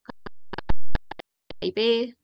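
A quick, irregular run of about a dozen short sharp clicks lasting about a second and a half, then a woman's voice begins.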